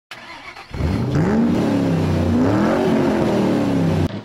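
An engine revving up and falling back twice, cut off abruptly at the end.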